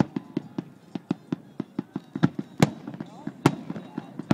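Fireworks display: a rapid run of sharp bangs and crackles from aerial shells and low effects, about three or four a second, with two louder reports in the second half.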